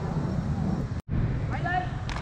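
People's voices talking over a steady low outdoor rumble. The sound drops out for an instant about a second in, and a voice comes back near the end.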